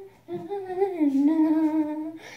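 A girl humming a tune with her mouth closed: a short note, then a wavering line that slides down and settles into a long held low note through the second half.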